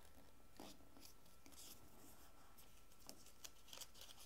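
Near silence, with a few faint rustles and light ticks of cardstock being folded and creased by hand.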